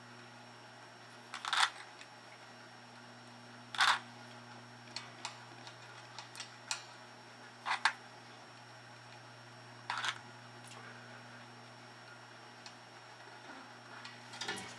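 Solder flux crackling and spitting as a hot soldering iron wicks old solder into copper desoldering braid on a steel tremolo claw. There are four sharp crackles spaced a few seconds apart, with fainter ticks between them.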